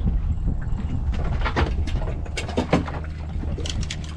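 Irregular splashes and knocks as a small gummy shark thrashes at the surface and is hauled out of the water beside the boat, over a steady low rumble.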